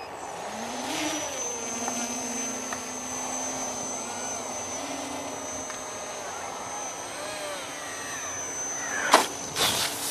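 Electric motor and propeller of a foam RC jet model whining in flight as it is brought in to land, its pitch rising and falling with the throttle. A few sharp knocks near the end.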